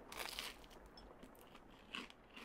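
Faint close-up eating sounds: crunchy bites and chewing, with a louder crunch early on and another near the end and small mouth clicks between.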